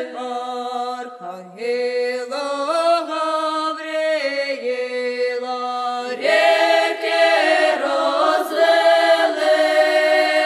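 Ukrainian folk vocal ensemble singing a koliadka (Christmas carol) unaccompanied in several voice parts, holding long notes that step from pitch to pitch. About six seconds in, the singing grows louder and fuller.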